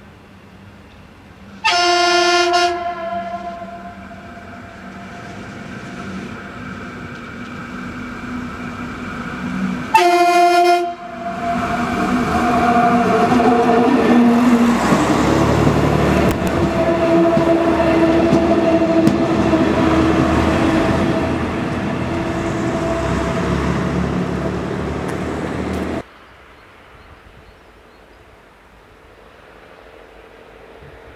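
DR class 172 'Ferkeltaxi' diesel railbus sounding its horn twice, each blast about a second long and some eight seconds apart, then running past close by with loud engine and wheel noise. The sound cuts off suddenly about 26 seconds in, leaving only faint background.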